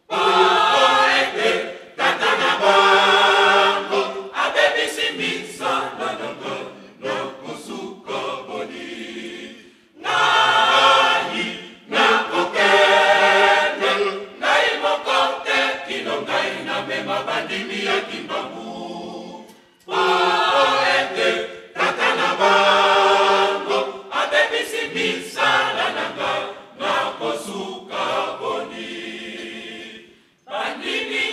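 Church choir singing a cappella under a conductor, in repeated phrases about ten seconds long, each broken by a short pause.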